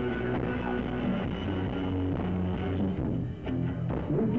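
Live rock band playing, loud and steady, with a brief drop in loudness a little after three seconds in.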